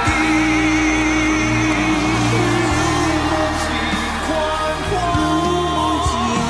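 Mandarin pop ballad sung by male voices over band accompaniment. The singing holds long notes with vibrato.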